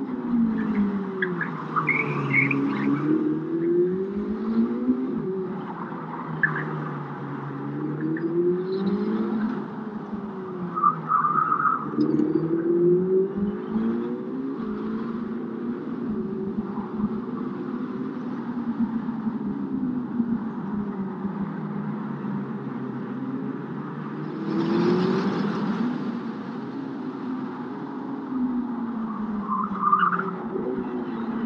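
Ferrari SF90 Stradale's twin-turbo V8 driven hard, its pitch rising and falling over and over as the car speeds up and slows. A few brief high squeals come through along the way.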